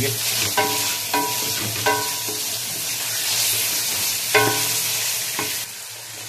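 Beef koftas sizzling in curry masala in a steel pan as they are fried down (bhuna) and stirred with a wooden spatula. The spatula knocks against the pan about five times, and each knock rings briefly. The sizzle drops away shortly before the end.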